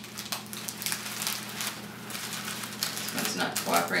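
Plastic zip-top bag crinkling and paper towels rustling as a paper-plate-backed packet is pushed into the bag, a quick irregular run of small scratchy rustles.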